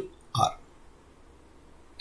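A man's voice gives one short syllable about a third of a second in, then quiet room tone.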